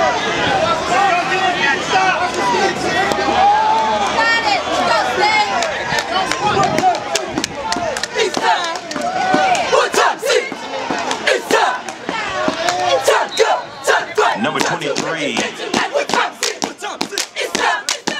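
A cheer squad yelling and whooping together, many voices at once. About halfway through, sharp hand claps come in and grow more frequent toward the end as the group works up to a chant.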